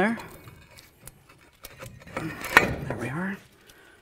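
Light metallic clinks and scraping as a cast-iron brake caliper is slid into place over the rotor, with a sharper clink about two and a half seconds in.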